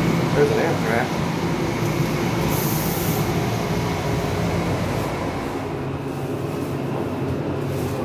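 Hydraulic elevator travelling between floors: a steady low mechanical hum inside the stainless-steel cab, with a brief hiss about three seconds in.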